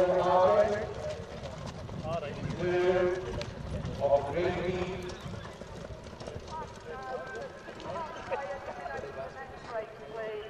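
Hooves of a harness horse pulling a sulky, clip-clopping on a dirt track as it moves off, under people talking.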